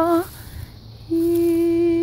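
A single voice humming long held notes at one steady pitch, as light-language toning. One note ends just after the start, and after a short pause another begins about a second in and is held on.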